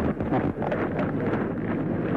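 Steady outdoor noise with wind buffeting the microphone and scattered short crackles.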